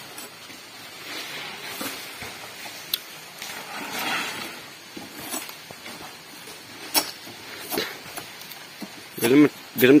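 Rustling of undergrowth with a few sharp, isolated knocks of a machete and a wooden pole being handled; a man's voice starts near the end.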